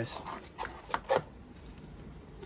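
Trading cards being handled and set down on a desk mat: about four short taps and rustles in the first second and a half.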